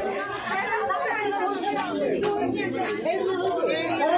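Several people talking at once: overlapping chatter of voices throughout.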